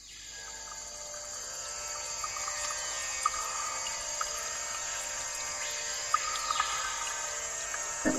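Steady droning background music of many held tones, fading in from silence over the first couple of seconds, with a few short chirps over it.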